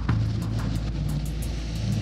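Coast Guard rescue boat under way in rough seas: a steady engine hum under a continuous rush of wind and water, with background music over it.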